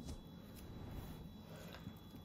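Quiet room tone with no distinct sound event.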